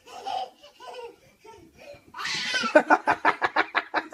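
Laughter: soft vocal sounds at first, then a breathy burst about two seconds in and a quick run of ha-ha-ha pulses.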